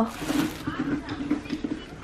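Faint voices talking in the background, with no clear sound of the pumpkin being worked.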